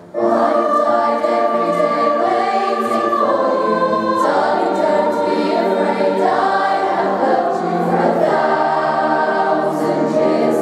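A youth choir of girls' and boys' voices singing in harmony. The whole choir comes in together at the start after a brief pause, then holds long, sustained chords.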